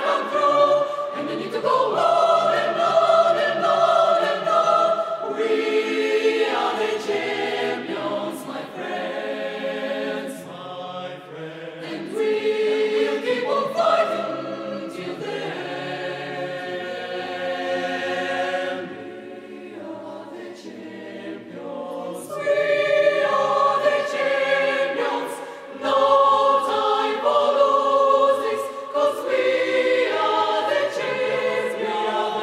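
Mixed choir of women's and men's voices singing held chords. The singing grows quieter in the middle and swells louder again about two-thirds of the way through.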